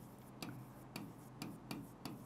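Faint, irregular clicks of a pen tip tapping on the writing board as a word is written by hand, about two a second.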